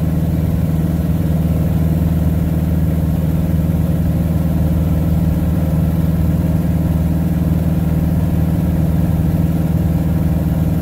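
Piper Super Cub's piston engine and propeller droning steadily in cruise flight, heard from inside the cockpit, with an even, unchanging pitch.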